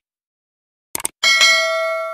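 Subscribe-animation sound effect: a few quick mouse-click sounds about a second in, then a notification bell dings and rings on, fading slowly.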